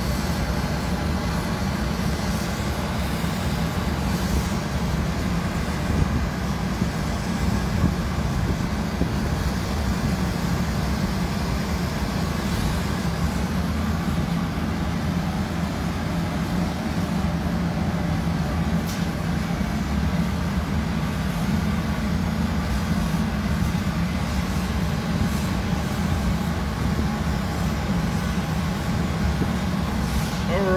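Steady low roar of the gas burners and blowers of a glassblowing studio, with a hand-held gas torch playing its flame on a black glass cane.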